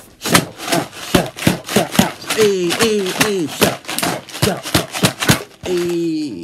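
A man's voice making a rhythmic beat: a quick run of sharp percussive hits, about three to four a second, with a few sung notes in the middle.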